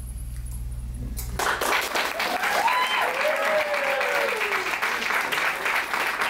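Audience applauding a stage performance, starting suddenly about a second and a half in after a short stretch of low hum, with a voice cheering in one long call through the middle.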